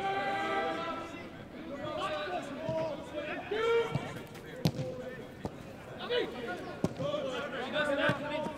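Footballers shouting to each other across an outdoor pitch, with a few sharp thuds of the football being kicked in the second half.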